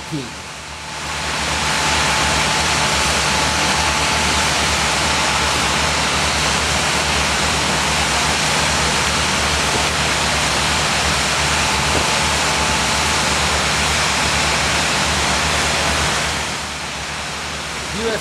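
Steady, loud rushing hiss of high-volume fire-monitor water streams, with a low steady hum underneath. It swells up about a second in and drops back to a lower level near the end.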